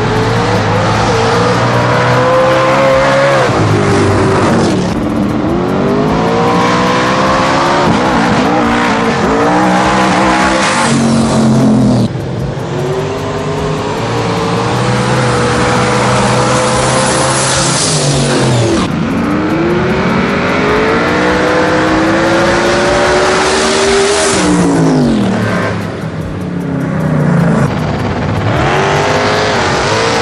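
Small-tire no-prep drag cars racing side by side at full throttle. The engine pitch climbs in long pulls, drops back and climbs again at each gear change, over several runs in a row. Near the end the pitch falls steeply as the cars go by, and then the engines rise again.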